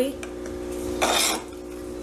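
A brief scrape of a utensil or dish against the plastic tray about a second in, over a steady low hum.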